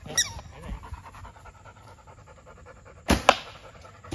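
A bow shot about three seconds in: a sharp crack from the released bowstring, followed a fraction of a second later by a second, fainter crack.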